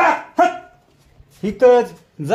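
A dog barking twice in quick succession, two short sharp barks about half a second apart, followed by a man's voice.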